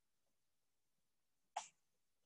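Near silence (room tone), broken once, about one and a half seconds in, by a single brief, soft noise.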